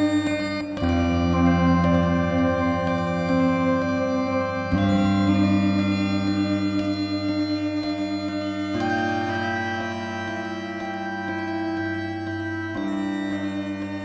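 Meng Qi Wingie2 resonator sounding sustained chords in the Meta-Slendro microtonal tuning. The chord changes about every four seconds, with a slight pulsing in the level.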